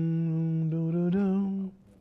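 A man humming a slow melody: a long held low note, then a step up to a higher note that stops about 1.7 seconds in.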